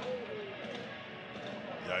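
Faint ballpark ambience on the broadcast's field microphone: a steady background of crowd and dugout noise with distant voices.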